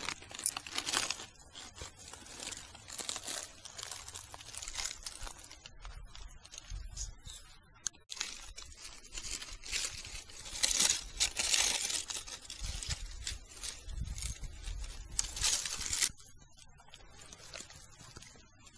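Footsteps through dry autumn leaf litter: irregular rustling and crunching of dead leaves, dying down about two seconds before the end.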